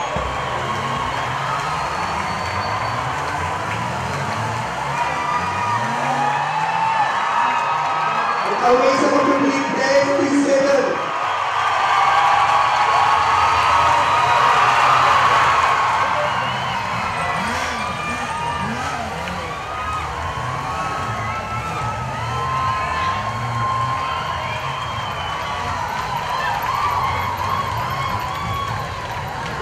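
Large stadium crowd cheering, whooping and shouting while a team of motorcycles rides past, with engines revving in the first few seconds. A loud pitched note sounds for about two seconds around nine seconds in.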